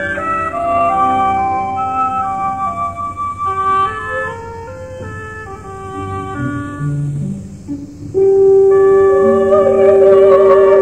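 Opera orchestra playing a passage with woodwinds carrying melodic lines over sustained chords, softening in the middle; about eight seconds in, a loud held note enters suddenly.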